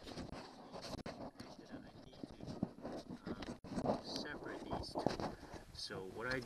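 Faint scattered clicks and rubbing from hands handling a plastic wiring-harness connector, with a faint voice heard briefly about two-thirds of the way through.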